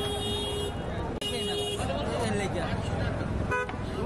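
A vehicle horn honks twice, a steady long blast and then a shorter one, over the hubbub of a busy street market.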